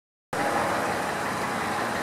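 Steady outdoor background hum and hiss, starting a moment in after a brief silence, with no distinct events.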